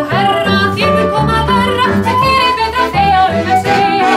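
Live Icelandic folk song: a woman's voice singing with vibrato over accordion and plucked double bass, with a flute among the accompaniment.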